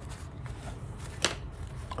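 A wet paint brush being dried on a paper towel: faint rustling handling with one sharp tap a little past the middle.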